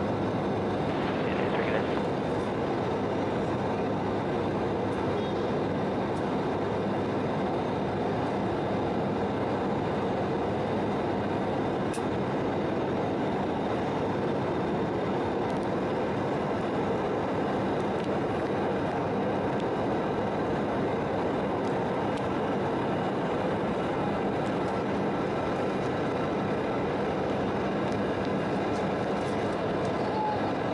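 Steady cabin noise of an Embraer 170 airliner climbing after takeoff: the even hum of its turbofan engines and rushing airflow, with faint steady tones running through it.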